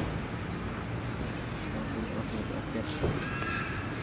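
Outdoor background with faint distant voices, a thin high whistle in the first second and a short pitched call about three seconds in.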